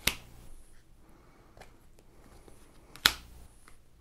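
Two sharp snaps about three seconds apart, with faint ticks between: tarot cards being pulled from the deck and put down on the table.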